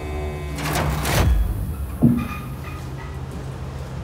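Heavy steel security door being unlatched and swung open: two rushing, scraping sounds in the first second and a half, then a sharp metallic clunk with a brief ring about two seconds in, over a low steady hum.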